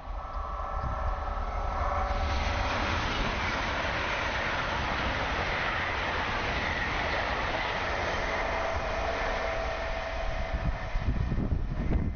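LNER Class 801 Azuma electric train passing at speed: a steady rush of wheels on rail and air builds about two seconds in and holds as the coaches sweep by. Near the end it gives way to gusty wind on the microphone.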